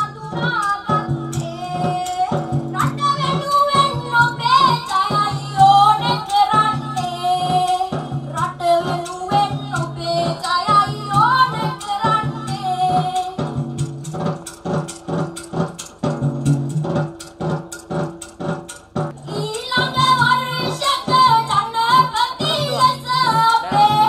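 A woman singing a song into a microphone over instrumental accompaniment with a steady drum beat. Her voice drops out for a few seconds in the middle while the accompaniment carries on, then comes back.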